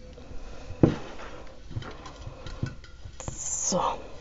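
Hands pressing and rustling moss inside a glass vase, with a few short knocks, the clearest about a second in.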